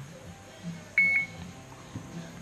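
Drift Ghost XL helmet action camera giving one short electronic beep about a second in as it powers on.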